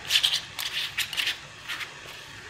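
Metal screw band being twisted onto a glass mason jar, the threads scraping in about four short bursts as the band goes on a little tight.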